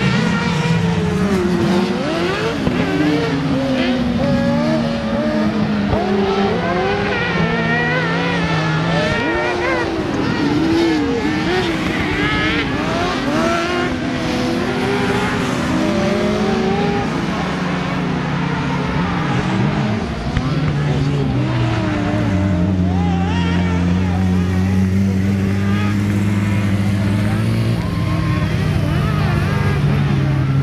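Several kartcross buggies' engines racing together, revving hard, their pitch climbing and dropping again and again over one another. In the last third the engines hold steadier notes.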